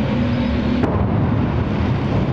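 Armoured vehicle's engine running, a loud steady low rumble, with one sharp click a little under a second in.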